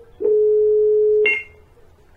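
A telephone line tone: one steady beep at a single mid pitch, about a second long, heard over a phone call and ending in a short click.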